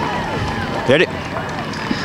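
Background chatter of many voices talking at once, with one short word spoken close to the microphone about a second in.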